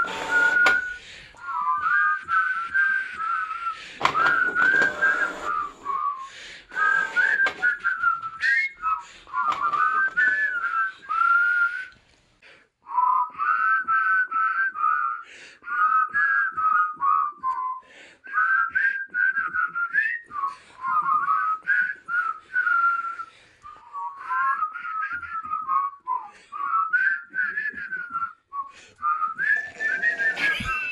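A person whistling a tune: a single wavering melody line in phrases with short breaks and a brief pause about twelve seconds in, with scattered clicks behind it.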